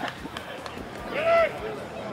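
A single loud shout from a man on the field, one drawn-out call that rises and falls in pitch about a second in, over open-air field noise, with a short click at the very start.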